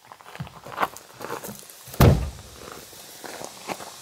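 Footsteps on a dirt track, with a car door shut with a single loud thump about two seconds in.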